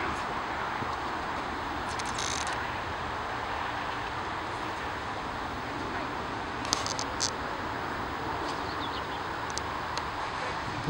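Steady outdoor background hiss, with a few short sharp clicks about two seconds in and twice around seven seconds in.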